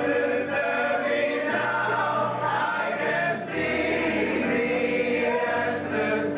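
Stage musical cast singing together as a choir, holding long notes with music.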